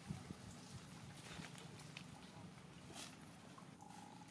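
Faint water sounds from a macaque swimming and wading through a shallow pond: a couple of soft knocks and splashes at the start, then scattered small splashes and drips.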